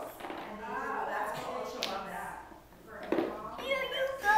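Children's voices talking quietly, with a single sharp tap of wooden blocks a little before the middle.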